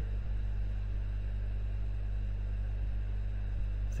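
Steady low electrical hum with a faint even hiss: the background noise of the recording.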